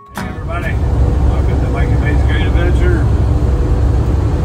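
Steady low road and engine rumble inside a vehicle's cab at highway speed. It comes in suddenly at the start and builds over the first second.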